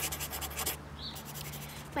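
Pencil scratching on paper on a clipboard in quick, rapid strokes, with a short pause about halfway through.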